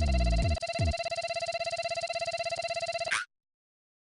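Electronic ringing tone with a fast, even trill, like a telephone ringer, with a few low falling sweeps under it in the first second; it cuts off abruptly about three seconds in.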